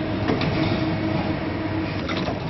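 Side and heel lasting machine running as it last a sport-shoe upper: a steady mechanical hum with a faint click about a third of a second in.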